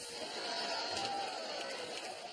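Studio audience laughing, a steady wash of many voices just after a punchline.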